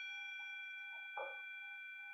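A metal singing bowl ringing on after a strike and slowly fading, its several steady tones held while the lowest one pulses a few times a second. A soft knock comes about a second in.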